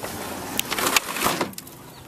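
Particle-board console TV cabinet being tipped over face-down onto carpet: a rush of wood creaking and rubbing with two sharp knocks, the first about half a second in, then settling near the end.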